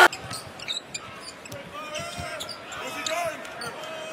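Arena sound of an NBA game in progress: low crowd noise with a basketball bouncing on the court now and then, and faint voices.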